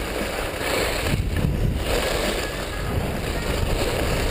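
Wind rushing over the microphone of a camera carried downhill on skis, a steady low rumble with the hiss of skis sliding on packed snow.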